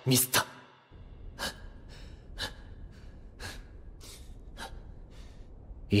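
A person in the film soundtrack breathing hard, with sharp gasping breaths about once a second over a low hiss, after a brief spoken word at the start.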